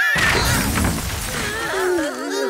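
Cartoon crash sound effect: a sudden noisy clattering smash that fades over about a second and a half as the characters tumble into a heap. A voice cries out near the end.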